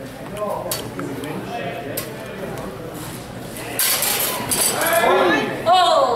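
Steel rapier and dagger blades clinking together in a fencing exchange, with a dense burst of metallic clashing about four seconds in. A raised voice follows near the end.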